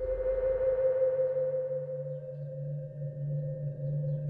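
Magic-orb sound effect: a sustained ringing tone like a singing bowl, with a low wavering hum coming in underneath about a second in.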